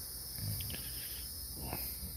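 A quiet pause filled by a steady, high-pitched background hiss, with a faint low rumble beneath it.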